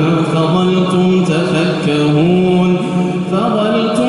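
A man reciting the Quran in a slow, melodic chant, holding long drawn-out notes with ornamented turns and rising a step about two seconds in and again near the end.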